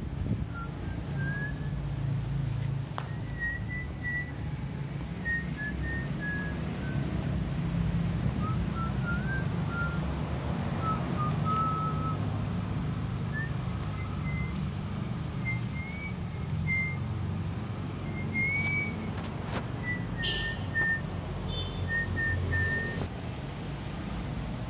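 A person whistling a slow tune of short notes that wander up and down in pitch, over a steady low rumble. A few sharp clicks come about three-quarters of the way in.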